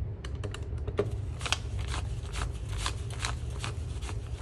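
Calculator keys tapped in a quick run of light clicks, then paper banknotes flicked one by one as they are counted by hand, about two or three flicks a second, over a low steady hum.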